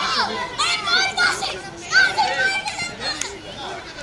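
Young children shouting and calling out while playing football, several high-pitched voices overlapping in short calls, the loudest about two seconds in.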